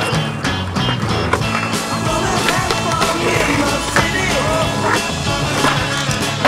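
Rock music soundtrack over skateboarding sounds: urethane wheels rolling and the board's pops and impacts as tricks are landed.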